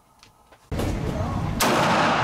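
A single 9mm pistol shot about one and a half seconds in, from an FN Reflex, with a long echoing decay. It comes just after loud range noise cuts in suddenly.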